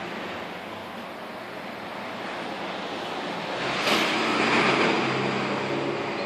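Steady rushing background noise with a faint low hum, growing louder about four seconds in.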